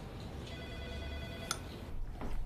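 A single steady electronic tone with several overtones, like a phone's ring or beep, lasting about a second and cut off by a sharp click, over a low steady hum.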